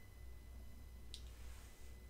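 A single faint click about a second in, as the power button of a small UFO hand-controlled mini drone is pressed to switch it on, over a faint steady high tone.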